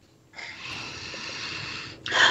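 A person's long breath out close to a headset microphone, a steady breathy hiss that starts about a third of a second in and lasts about a second and a half.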